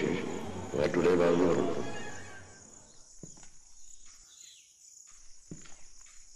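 A man's voice from an old archival recording speaks a line and fades out after about two seconds. Quiet outdoor ambience follows, with a steady high hiss, two soft knocks and a brief high chirp.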